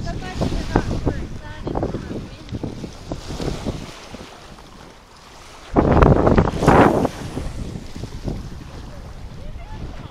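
Wind buffeting the microphone in gusts, the strongest about six seconds in, over the wash of choppy water at the shore.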